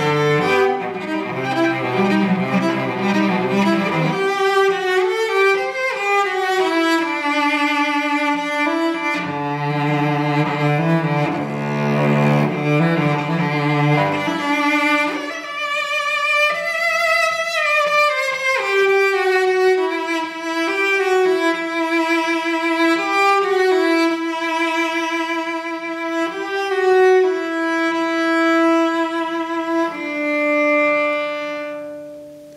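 Solo cello strung with a full set of new Thomastik-Infeld Versum Solo strings, bowed unaccompanied. Low passages with several strings sounding together alternate with a melody of held notes higher up.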